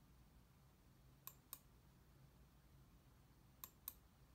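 Wireless computer mouse button clicking over near silence: two pairs of quick clicks, one about a second in and one near the end.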